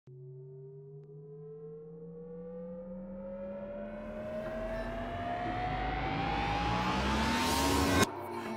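A rising intro sweep over a held low chord: one pitched tone glides steadily upward while a hiss swells in, growing louder throughout and cutting off abruptly at the end.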